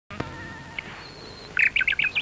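Birds chirping: faint thin whistling notes, then a quick run of louder chirps in the last half-second.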